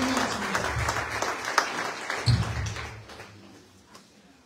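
Audience applauding, the clapping dying away over the last second or so.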